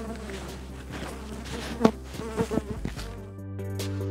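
Honeybees buzzing around an open hive, with a few sharp knocks, the loudest about two seconds in, as wooden hive frames are handled. About three seconds in, the outdoor sound cuts out and background music with steady low tones carries on alone.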